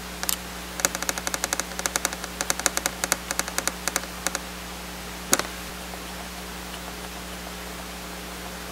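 Small metal screws clicking as they are handled and dropped into the screw holes of a Toughbook CF-19's rear cover: a quick run of light clicks for about three seconds, then one sharper click a second later.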